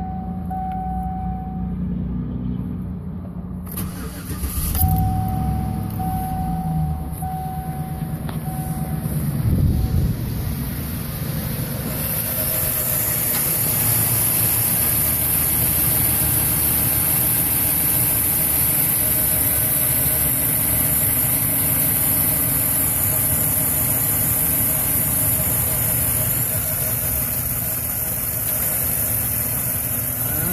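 Pickup truck dashboard chime beeping repeatedly, then the starter cranking about four seconds in. The engine catches with a brief rev near ten seconds and settles into a steady idle.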